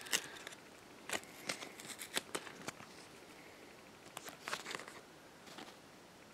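Hands unwrapping and handling a leather-wrapped handmade CD package: soft, faint rustling with scattered small clicks, and a short cluster of rustles about four seconds in.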